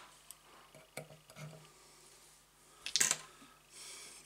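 Small clicks and taps of tools being handled at a fly-tying bench, with one sharp, louder click about three seconds in.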